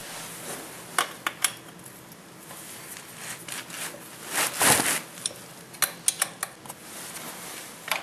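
Metal wrench clinking and scraping on the bolts as they are tightened: scattered sharp clicks, with a longer rasping scrape about halfway through.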